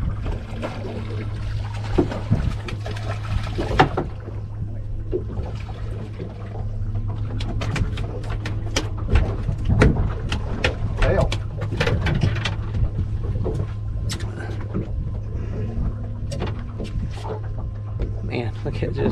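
Sounds aboard a small fishing boat at sea: a steady low hum and water against the hull. In the middle comes a run of sharp knocks and clicks as a red snapper is reeled up and swung aboard. Indistinct voices are heard early on.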